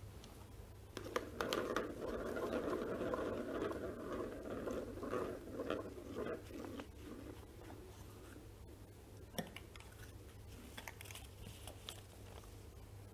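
Plastic draw balls rattling and rubbing against each other and a clear bowl as they are stirred and one is taken out. A single sharp click about nine seconds in as the ball is opened, then light crinkling of the paper name slip being pulled out and unrolled.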